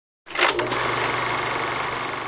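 Intro sound effect under a logo: a sudden sharp hit, then a dense, rapid mechanical rattle with a faint steady ring that carries on and begins to fade.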